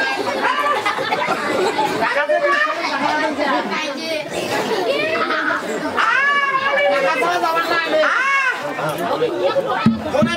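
Several people's voices talking loudly over one another with background chatter, with sharply rising and falling exclamations twice in the second half.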